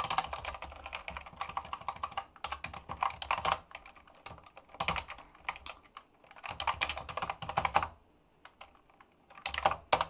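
Computer keyboard typing in quick bursts of keystrokes, broken by a pause of about a second and a half near the end before a last short burst.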